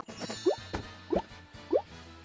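Cartoon-style 'bloop' sound effects: three short, quick upward-sliding pops about two-thirds of a second apart, over light background music.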